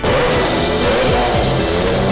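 A loud, sudden start as the Nissan DeltaWing's turbocharged 1.6-litre four-cylinder engine fires for the first time and keeps running, under background music.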